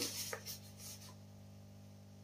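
A small cardboard box is handled and opened by hand. There is soft rubbing and scraping of cardboard with a small click in the first second, then only a faint steady low hum.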